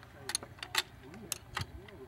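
Metal wrench clicking against steel hex bolts as the blade-hub bolts of a small wind turbine are tightened by hand: a handful of short, sharp clicks at irregular intervals.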